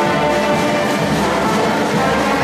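Live brass band playing samba music, with many horns holding and changing notes together at a steady, loud level.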